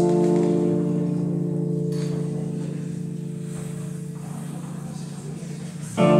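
Korg digital piano: a single chord held and slowly fading away. The next chord is struck right at the end.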